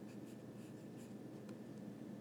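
Faint taps and strokes of handwriting on an iPad's glass touchscreen, a few brief marks over a low steady background hum.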